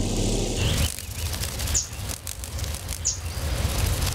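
Hummingbird wings whirring in a low flutter, with two short high chirps about two and three seconds in.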